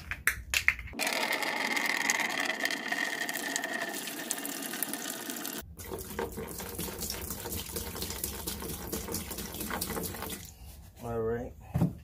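Liquid stone sealer poured in a steady stream from a one-gallon plastic jug into an empty plastic storage tote, splashing as it fills the bottom, with a brief break about halfway through.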